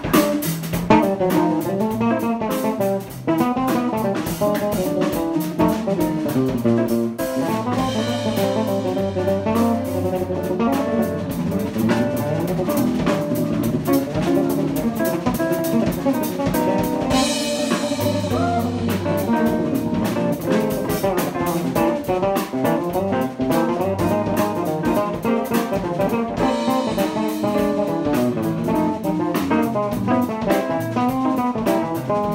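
Live instrumental jazz trio of electric guitar, electric bass and drum kit playing together, with the cymbals swelling up three times.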